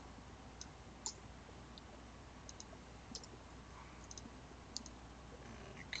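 Faint, scattered clicks of computer keys and a mouse: about ten irregularly spaced, as code is edited.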